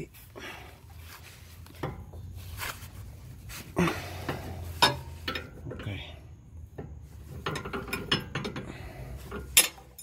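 A wrench working a nut loose on the underside of a car: irregular metallic clicks and knocks, a few of them sharper and louder, as the nut is broken free for an alignment adjustment.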